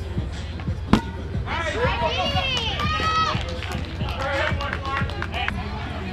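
Kickball players shouting long, drawn-out calls across the field, with a single sharp knock about a second in.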